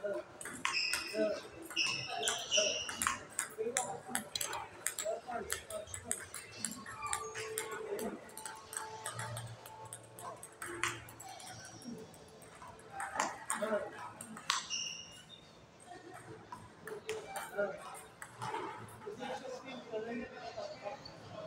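Table tennis rally: a plastic ball clicking off rubber paddles and the tabletop in quick succession, with a few short high-pitched squeaks and voices in the background.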